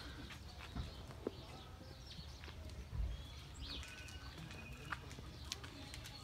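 Outdoor ambience of birds chirping, with a few short whistled bird notes a little past halfway, over scattered footstep clicks on a paved path and a low handling thump about halfway.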